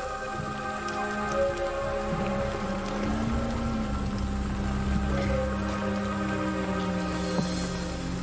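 Background music of long, sustained drone tones, one swelling and falling back midway, over a steady crackling hiss.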